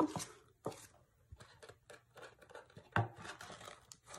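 Paper rustling and light taps as cash bills and paper envelopes are handled and flipped through in an envelope box, with one louder knock about three seconds in.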